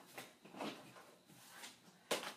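Faint handling sounds: a few soft, brief rustles as stamp sets and their packaging are picked up and moved.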